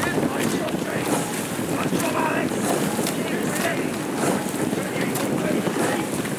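Wind buffeting the microphone in a steady rumble, with short bursts of distant shouting now and then.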